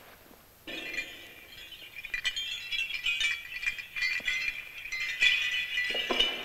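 Small round metal bells on a leather strap jingling, with irregular clinks and ringing chimes starting suddenly about a second in.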